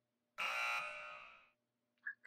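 Buzzer sound effect of the wrong-answer kind, marking points taken off: one steady buzzing tone that starts sharply under half a second in and fades out over about a second.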